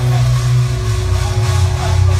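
Loud funfair sound dominated by a steady, deep bass drone, in a stretch of loud rock music from the ride's sound system.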